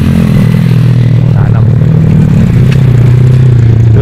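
Small motorcycle engine running as the bike rides past close by, a steady low engine note that sinks slightly in pitch as it goes.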